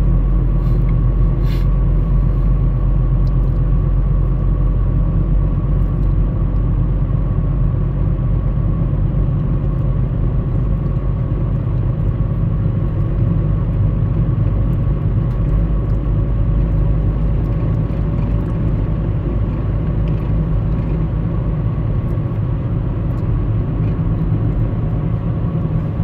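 A car driving at steady speed on an open road, heard from inside the cabin: a constant low rumble of engine and tyre noise with a faint steady whine above it.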